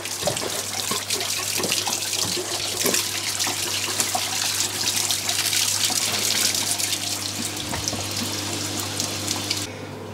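Water spraying and splashing out of the top of a Fluval FX2 canister filter, pumped out of the open outlet fitting because the outlet valve was taken off before the filter was switched off. A steady splashing that cuts off abruptly just before the end.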